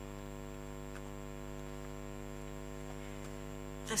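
Steady electrical mains hum with a stack of evenly spaced overtones.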